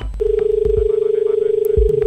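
A loud, steady electronic tone, one mid-pitched note, begins just after the start and holds unbroken for about two seconds, over low thumping beats.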